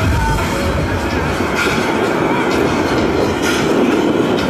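Dance music from an outdoor beach-party sound system in a breakdown, its bass beat dropped out, with a steady rushing noise filling the gap.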